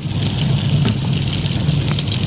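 A pot of cooked oats with melting chocolate simmering over the stove heat, giving a steady sizzling hiss over a continuous low hum.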